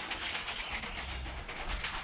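Steady hiss of a 5-litre pump-up pressure sprayer's wand nozzle spraying a jet of insecticide mix onto a house wall.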